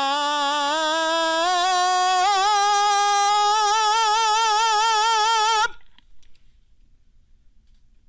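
A tenor singing a sustained 'ah' with vibrato, stepping up in pitch through his passaggio in a musical-theatre rather than classical manner. The note cuts off suddenly near the end, followed by a few faint clicks.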